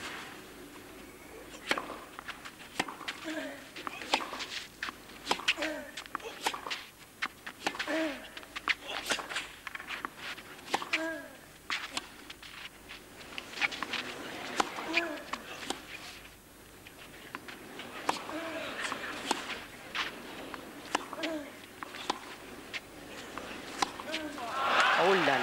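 Tennis ball struck back and forth with racquets in a long backhand rally: a sharp strike about every second for some twenty seconds, stopping near the end.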